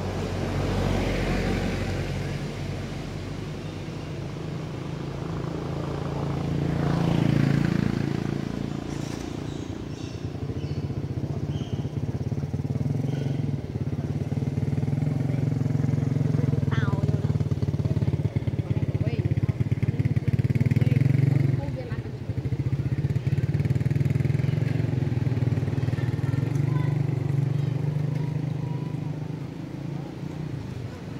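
A motor vehicle engine running steadily nearby, swelling louder about a quarter of the way in and dipping briefly about two-thirds of the way through.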